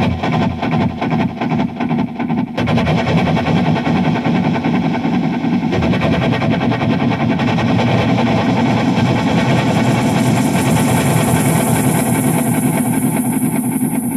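Dense, engine-like drone of distorted electric guitar and effects noise in an early-1970s space-rock recording. It thickens after a couple of seconds and gains a bright hiss toward the end.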